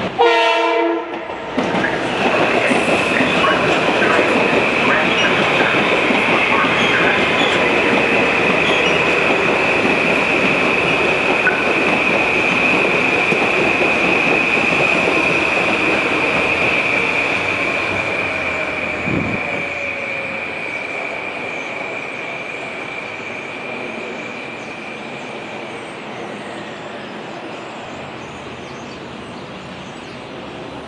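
Metro-North electric commuter train sounding a short blast on its horn, then running past at close range with loud steady rail noise and a thin high-pitched whine. The noise fades slowly as the train pulls away.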